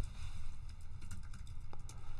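Scattered light clicks and taps at a computer keyboard, irregular and without a steady rhythm, over a low steady room hum.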